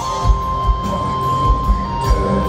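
Live heavy metal band playing: electric guitars and drum kit with regular kick-drum hits under a long held high lead note.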